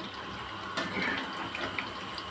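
Chicken pakodi deep-frying in hot oil in a kadai: a steady sizzle, with a few light clicks of a perforated metal ladle against the pan as the pieces are stirred and lifted out.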